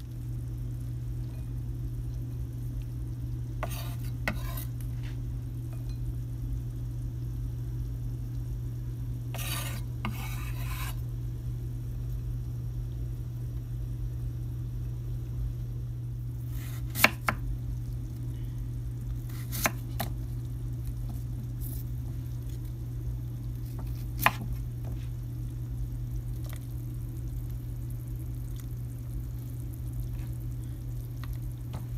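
Food-preparation sounds over a steady low hum: a couple of brief scrapes and a longer one of about a second and a half, like a knife scraping chopped green onions across a wooden cutting board, then a few sharp clicks, the loudest about halfway through, like a knife or dish knocking on the board or counter.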